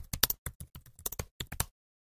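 Computer keyboard typing sound effect: a quick, uneven run of key clicks that stops shortly before the end.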